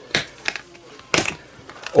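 Plastic snap latches on a hard plastic storage case clicking as they are unfastened: three sharp clicks within the first second or so.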